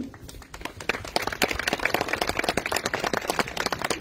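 A crowd applauding: many hands clapping. It starts thinly and fills out about a second in, then holds steady.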